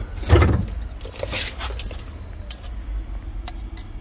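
Steel tape measure being pulled out and set against a gearbox shaft inside the bellhousing: a brief rustle followed by a few sharp light clicks, over a steady low rumble.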